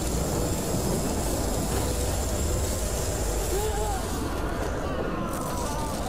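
TV action-scene sound effects: a sustained rushing blast of fire with a deep rumble underneath, and a brief voice cry near the middle.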